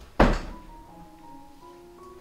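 A single loud thump about a quarter-second in, dying away within half a second, over soft background music of held notes.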